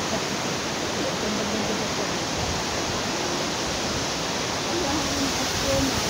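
Steady rushing roar of a waterfall, with faint voices underneath.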